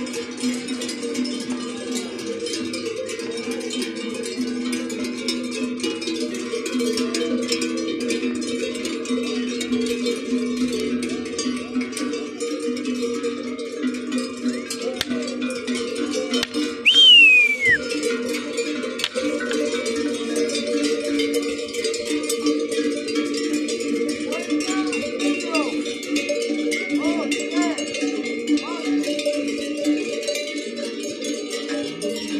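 Many cowbells on a herd of walking cattle clanking and ringing without pause, their tones overlapping in a dense jangle. About halfway through, a single loud whistle slides down in pitch.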